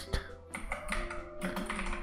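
Computer keyboard being typed on, a quick run of key clicks, over background music.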